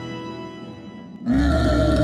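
Eerie film score with sustained tones, then, just past a second in, a loud, deep creature roar breaks in suddenly over it from the giant cartoon monster opening its jaws.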